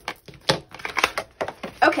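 Handling sounds: a few sharp clicks and rustles as a cut paper packaging band is pulled off a faux-leather planner folio and the folio is set down on a tabletop.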